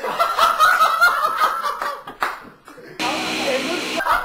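Several people laughing and exclaiming together, then a steady hiss for about the last second.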